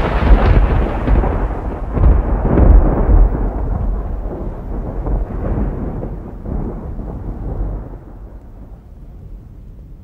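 A thunderclap rolling into a long, deep rumble, loudest with several swells in the first three seconds, then rolling away and fading out near the end.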